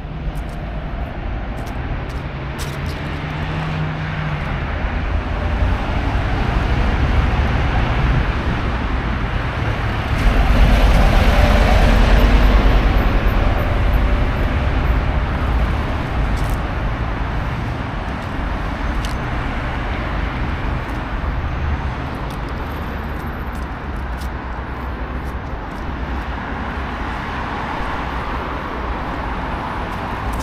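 Road traffic on a city avenue: a steady rumble of cars driving past, swelling as a heavier vehicle passes close and loudest about ten to thirteen seconds in, then easing back.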